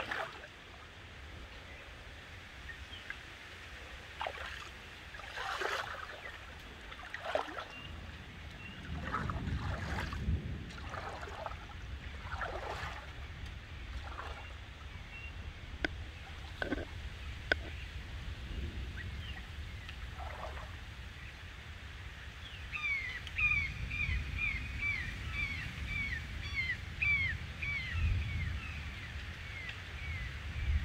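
Water sloshing and splashing around a person's legs as he wades into a shallow river, over a steady low rumble. Near the end a bird calls a quick run of about a dozen short chirps.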